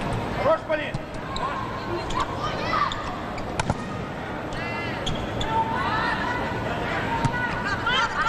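Volleyball rally: a leather volleyball struck several times by hands and arms, each hit a sharp smack, over the steady noise of a sports hall with voices.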